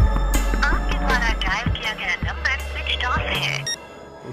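Tense background score with a deep, steady bass drone, with a voice speaking over it, then a short electronic beep near the end.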